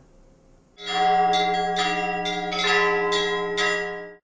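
Church bells ringing in a quick run of strikes, about three a second, over a steady low bell tone, starting just under a second in and cutting off suddenly at the end. It is the bell chime of a TV programme's title card.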